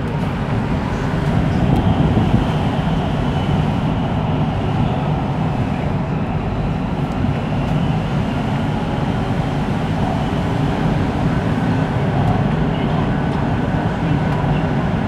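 Steady running noise of an MRT Sungai Buloh–Kajang Line metro train (Siemens Inspiro) at speed in a tunnel, heard from on board at the front. A low rumble of steel wheels on rail, enclosed by the tunnel walls.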